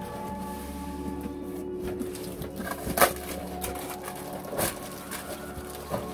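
Plastic-wrapped parts and cardboard packaging being handled: scattered rustles and handling knocks, the sharpest about halfway through, over steady background music.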